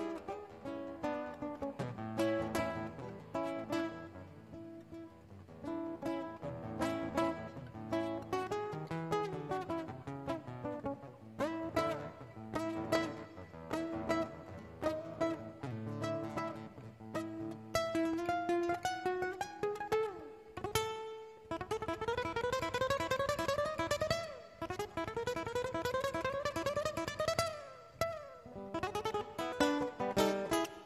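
Solo classical guitar played fingerstyle: a plucked melody over bass notes, then in the second half a string of quick rising runs.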